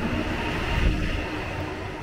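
PKP Intercity electric multiple unit pulling out of the platform close by: a steady rumble with a faint steady hum, very quiet for a train.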